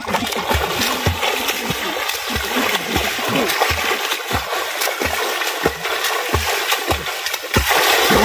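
A swimmer's arm strokes splashing through lake water: a steady wash of spray with a slap about every half second, louder near the end.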